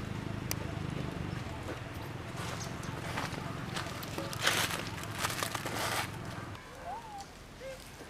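Dry leaves rustling and crackling in several bursts over a low steady background rumble. The rumble drops away, and then a few faint short squeaky calls come near the end.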